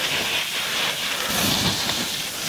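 Skis scraping and sliding over firm, steep snow during a descent, a steady hiss with slight swells.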